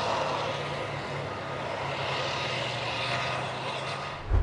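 Large crawler bulldozers' diesel engines running steadily under load: a low engine drone under a dense, even noise of machinery.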